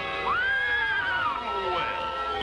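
Cartoon horse whinny: one pitched call that rises sharply, holds for about a second, then falls, over held orchestral chords.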